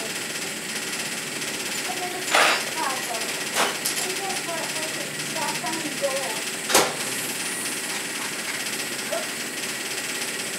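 Three sharp knocks over a steady hiss, about two and a half, three and a half and seven seconds in, with faint voices in the background.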